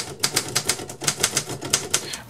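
Typewriter keys being struck in a fast, even run of sharp clacks, about eight or nine a second.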